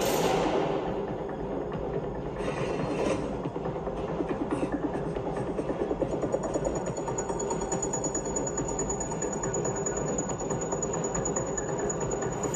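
Tense film-score music with a dense, churning, rattling texture and a fast pulse, joined by a thin high whine about six seconds in.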